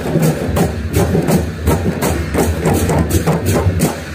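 Traditional festival percussion music, drums struck in a steady beat of about three strokes a second over a low continuous drone, played for street dancing.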